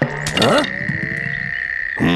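Cartoon sound effects: a short knock as a basket of raspberries drops to the ground, a few brief low sliding notes, then one steady high tone held to the end.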